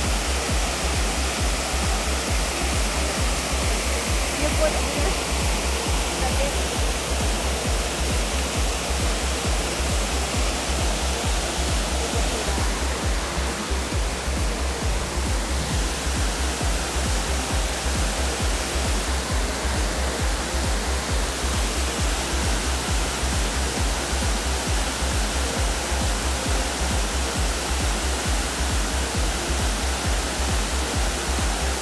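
Water pouring over a mill dam, a steady rushing, overlaid by background music with a low pulsing beat.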